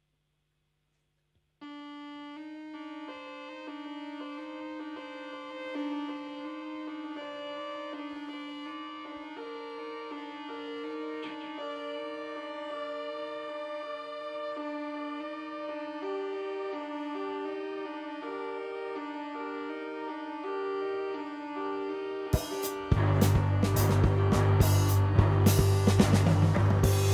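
Live band music. After a second or two, a keyboard starts a repeating pattern of held, organ-like notes. Near the end the drum kit and bass come in loud with a steady beat.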